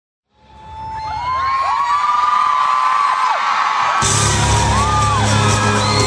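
Live pop concert sound fading in: a crowd of fans screaming and whooping. About four seconds in, the band starts playing with a heavy bass beat.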